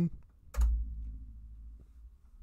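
A sudden low thump about half a second in, followed by a low rumble that fades out over about a second and a half.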